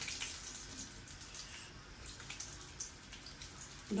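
Whole stuffed bitter gourds (karela) frying in shallow oil in a steel kadai: a faint, steady sizzle with a few small crackles.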